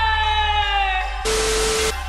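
A woman's long held vocal note, sliding slowly down in pitch and ending about a second in, over background music with a steady low bass. Shortly after, a burst of static-like hiss with one steady tone sounds for about half a second.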